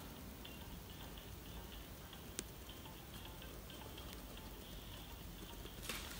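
Faint, intermittent scratching of a pen drawing on paper, with a single sharp tick about two and a half seconds in.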